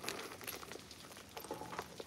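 Faint rustling and a few light clicks from a small leather handbag and wristlet being handled, as the wristlet is tried inside the bag.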